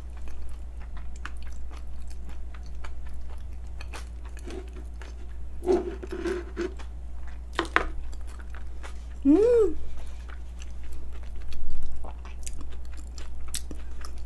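Close-miked mouth sounds of chewing a mouthful of food, with many small wet clicks and smacks throughout. A few short hummed "mm" sounds come around the middle, one of them rising and falling in pitch.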